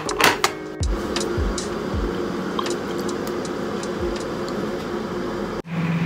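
Crockery clattering as a plate of fried eggs and sausages is set down on a table among mugs, with a few soft knocks after it, over a steady background that cuts off abruptly near the end.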